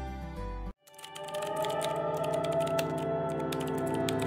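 Soft background music cuts off abruptly under a second in. After a brief gap, rapid typing on a laptop keyboard starts, quick clicks over new steady background music.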